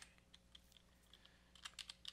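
Near silence, then a few faint computer keyboard keystrokes near the end as a word is typed.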